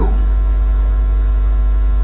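Loud, steady electrical mains hum on an audio recording, low and unchanging.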